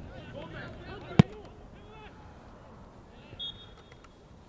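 A football is kicked hard about a second in: one sharp thud, the loudest sound. Players shout around it, and a short high whistle blast sounds near the end.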